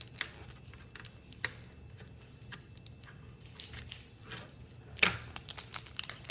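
Scissors cutting and hands handling the foil wrapper of a Pokémon booster pack: scattered light crinkles and clicks, with one louder crackle about five seconds in.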